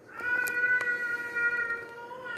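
A single long, drawn-out vocal cry held at one steady pitch for about two seconds, starting just after the beginning and fading near the end, with a few sharp clicks over it.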